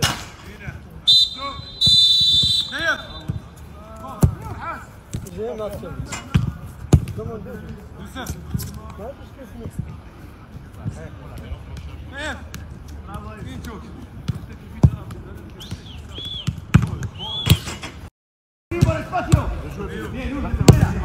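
Footballs being kicked during a shooting drill: sharp, irregular thuds of boot on ball, with shouting voices across the pitch. A short whistle blast sounds about a second in.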